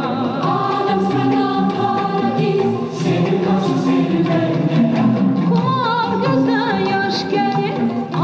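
Recorded music from a CD combining Azerbaijani and Norwegian music, played back: singing with a wavering, ornamented melody over instrumental accompaniment.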